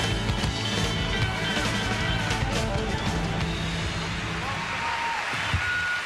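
Live rock-and-roll band playing the closing bars of a fast song, with drum hits and electric guitar. Over the last few seconds the music gives way to audience cheering and applause.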